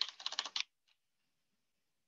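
Computer keyboard typing: a quick run of keystrokes lasting about half a second, then one faint key click.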